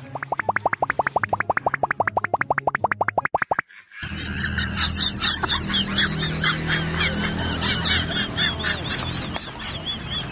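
A rapid string of cartoon 'plop'/'boing' sound effects, about eight a second, each falling in pitch, over low backing music; it cuts off suddenly about three and a half seconds in. After a brief gap, many quick high chirps follow over a low hum.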